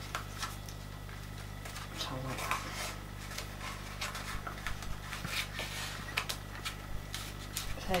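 Handling of a printed card shoe: card and paper rustling with light taps and clicks as it is pressed down onto a cutting mat, irregular and quiet, over a steady low electrical hum.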